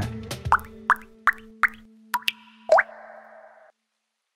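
Logo-intro sound effect of water-drop plops: four short, rising blips about a third of a second apart, then two more with a brief shimmering tail, over a held low note. It stops cleanly near the end.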